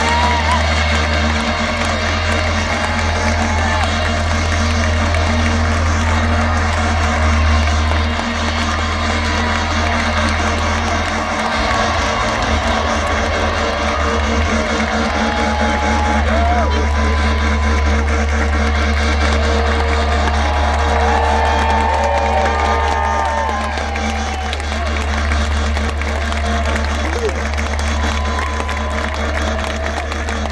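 Live band music heard from within the crowd: a sustained low bass note under singing voices, with crowd noise mixed in.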